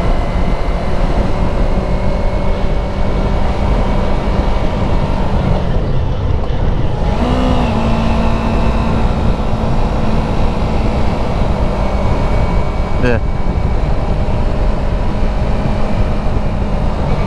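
Yamaha YZF-R3's 321 cc parallel-twin engine running at a steady cruise, heard from the rider's seat with wind noise. The engine note sags about six seconds in and picks back up a second or so later, then holds steady.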